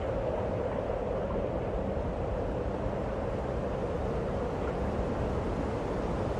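A steady, noisy low drone from an intro sound effect, the held tail of a cinematic impact, with a swell rising right at the end.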